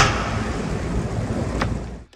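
Wind rushing over the microphone on an open fishing boat on the water, a steady rush that fades down toward the end, with a single click about one and a half seconds in.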